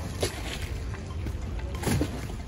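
Gondola moving on open water: a steady low rumble of water and wind, with two short knocks, one just after the start and one near the end.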